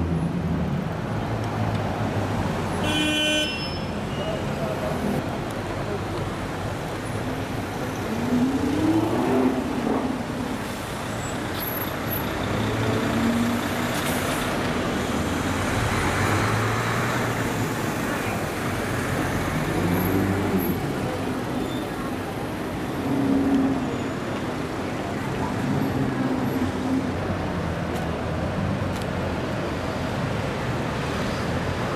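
City street traffic with supercar engines rising in pitch as cars accelerate away, twice. A car horn toots briefly about three seconds in.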